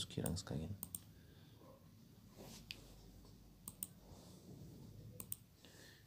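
Faint, sharp computer-mouse button clicks, several in quick pairs like double-clicks, spread across a few seconds.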